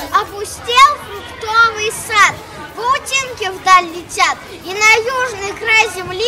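A young boy talking in a high child's voice, its pitch rising and falling in a lively way.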